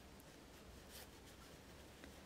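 Near silence: room tone, with faint rustles of cotton fabric being folded by hand.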